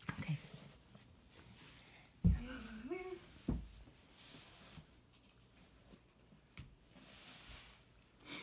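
A short wordless vocal sound that rises in pitch about two seconds in, followed by a low thump, over faint handling noise.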